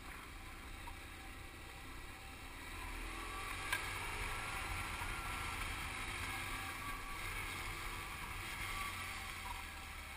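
Sidecar motorcycle's engine running as it pulls away at low speed, with low wind rumble on the helmet microphone; it gets louder and rises a little in pitch about three seconds in. A single sharp click just before four seconds.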